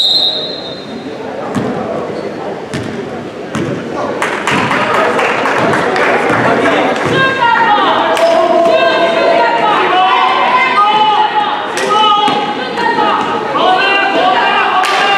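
A referee's whistle blown briefly at the start as play stops, then a basketball bouncing on the gym floor with sharp thumps. From a few seconds in, the gym fills with shoe squeaks and the voices of players and crowd as play resumes.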